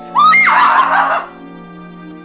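A woman's short, high-pitched scream that rises in pitch and lasts about a second, starting just after the beginning, over soft mallet-percussion background music.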